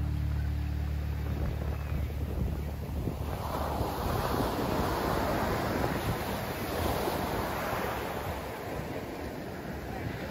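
Ocean surf: waves breaking and washing up a sandy beach, with wind on the microphone. The rush swells about three seconds in and dies down near the end, while the tail of a music track fades out in the first second or two.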